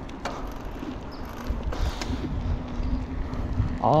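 Bicycle riding along a street: wind buffeting the microphone and tyre rumble, with a faint steady hum underneath. The rumble grows louder about halfway through.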